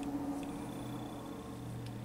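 Quiet room tone: a steady low hum with two faint ticks, about half a second in and near the end.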